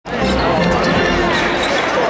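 Basketball dribbled on a hardwood court, with arena crowd chatter and voices.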